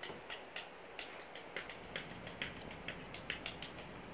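Footsteps crunching dry leaves and grit on an old wooden cabin floor: light, irregular clicks and crackles, about four or five a second, stopping just before the end.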